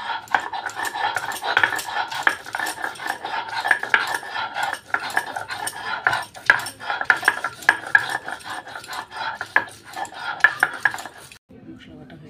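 A stone roller (nora) is rubbed back and forth over a stone grinding slab (sil), crushing ginger and green chillies into a wet paste. It makes a steady run of gritty scrapes and sharp stone-on-stone clicks, which stops shortly before the end.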